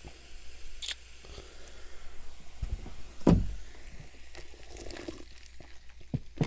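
Cola poured from a plastic bottle into a glass, fizzing, with scattered small clicks and a single thump about three seconds in.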